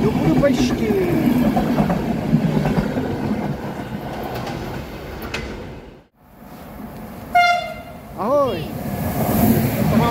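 Passing passenger coaches rolling by with wheel-on-rail clatter, fading and cutting out about six seconds in. Then an approaching RegioJet train's locomotive horn sounds two short blasts, the second bending up and down in pitch, and the rush of the train coming in builds near the end.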